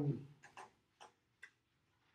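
A spoken 'um' trails off, then three faint, sharp clicks follow about half a second apart: light ticks from things being handled on a desk.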